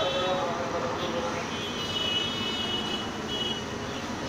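Excavators working in a river channel: a steady mechanical engine noise, with a voice briefly near the start and a high steady whine about halfway through.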